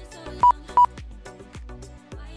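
Two short, loud electronic beeps, about half a second in and again a third of a second later, from the lap-timing system as cars cross the timing line, over background music with a steady beat.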